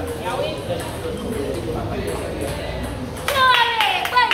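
Indistinct voices chattering in a large hall. Near the end, a louder, high sound slides down in pitch over about half a second.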